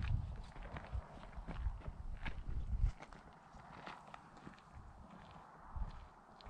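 Footsteps on a rocky, gravelly desert trail, a run of irregular steps that is louder for the first three seconds and fainter after that.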